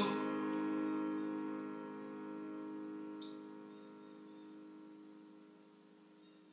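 The final held chord of a worship song's accompaniment, with the singing stopped, ringing on and slowly fading away to near silence.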